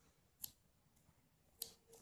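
Small scissors snipping crochet yarn: a faint short snip about half a second in and another, sharper one near the end, cutting the yarn off the finished piece.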